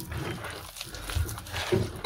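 A hand squeezing and working wet, lumpy cornmeal and wheat-flour dough in a bowl, with soft, irregular squishing sounds as the freshly added water is worked into the flour.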